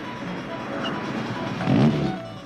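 Small open sports car's engine pulling hard as it approaches and passes, its note rising sharply and loudest near the end as it revs up under acceleration. Music plays underneath.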